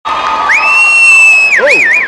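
A person whistling loudly: a high whistle rises about half a second in, holds one pitch for about a second, then dips and warbles up and down twice, over cheering from a crowd.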